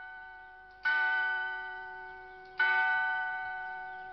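A bell struck twice, about a second in and again near the end, each strike ringing on and slowly fading away; the ring of an earlier strike is still dying away at the start.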